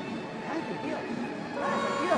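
Arena ambience: indistinct voices over a steady crowd hubbub, with faint background music. A steady held tone comes in near the end.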